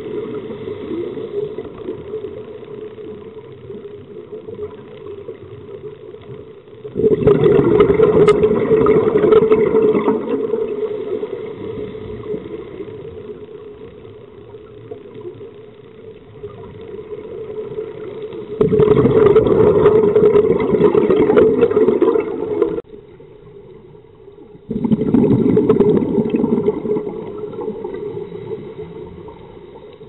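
Scuba regulator exhaust bubbles heard underwater: three loud rushing bursts of exhaled air, each lasting a few seconds and fading, the last two close together, with a quieter steady hiss between them.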